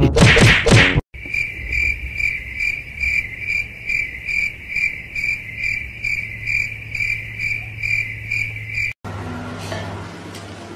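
A steady, cricket-like chirping: a high tone pulsing evenly about twice a second, over a low hum. It starts abruptly about a second in and cuts off sharply near the end.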